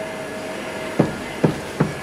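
Footsteps on a hard floor: three sharp steps about half a second apart in the second half, over a low steady room hum.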